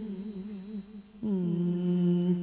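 A woman singing Vietnamese tân cổ (vọng cổ style): a long held note with wavering vibrato that fades out about a second in, followed by a new steady held note at a lower pitch.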